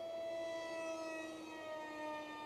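Faint, steady whine of an electric RC park jet's brushless motor (2212-size, 2700 Kv) and 6x3 propeller in flight through a loop. The pitch dips slightly about one and a half seconds in.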